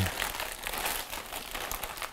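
Plastic bags crinkling and crackling as hands open a clear plastic bag and handle the antistatic bags inside.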